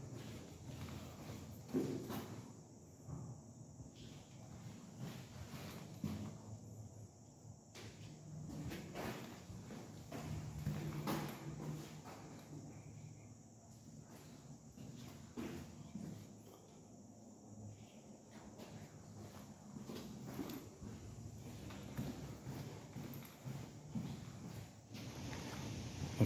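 Faint footsteps and camera handling noise from someone walking through a tiled restroom, with soft, irregular knocks every second or two.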